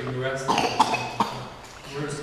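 A person gives two or three short, sharp coughs in quick succession, starting about half a second in, just after a voice trails off.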